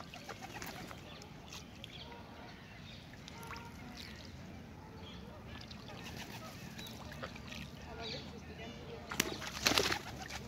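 A pigeon's wings flapping in a loud burst of about a second near the end. Before that there is a low, steady background with faint scattered bird calls.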